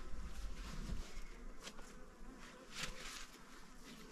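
A flying insect buzzing faintly, with a few soft rustles.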